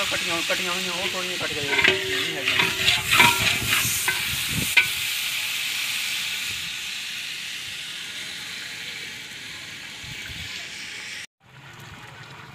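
Hot contents of a large metal cooking pot sizzling steadily, with a metal ladle knocking and scraping against the pot several times in the first half. The sizzle slowly dies down, then cuts off just before the end.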